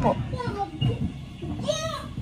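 Indistinct talking, with a child's high voice rising and falling near the end.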